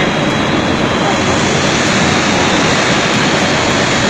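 Skip stranding machine running, a loud steady mechanical rush with no distinct beats.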